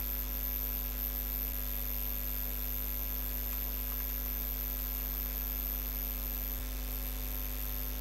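Steady electrical mains hum with a constant high whine in the recording, and two faint ticks about a second and a half in and near the end.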